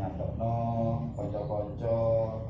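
A man's voice chanting a recitation in a low, steady tone, with long drawn-out syllables held on one pitch.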